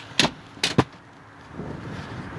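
Three sharp clicks and knocks in the first second, then faint rustling: a hand working the plastic trim and stow latch at the base of a minivan's second-row seat.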